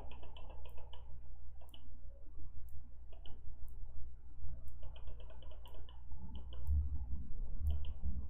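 Computer mouse buttons clicking, in quick runs of several clicks with short gaps between, over a low steady hum, with a few dull low thumps near the end.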